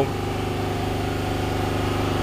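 An engine idling steadily, an even low hum with a fast regular pulse.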